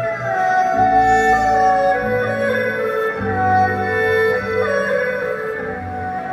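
Chinese traditional orchestra playing slow, sustained music, with a bowed erhu solo line over long held bass notes that change in steps.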